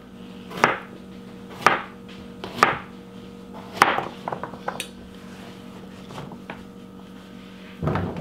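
Chef's knife chopping raw turnips on a plastic cutting board: four spaced strikes about a second apart, then a run of quicker, lighter taps and an odd later tap, over a steady low hum.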